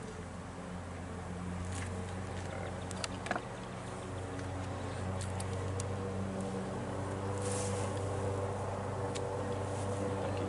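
Honeybees buzzing around an open hive, a steady drone made of several overlapping pitches that swells slightly, with a few light clicks from the frame being handled about three seconds in.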